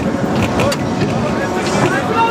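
Steel roller coaster train climbing its lift hill, a steady loud rumble from the train and track, with voices of riders and the fairground over it.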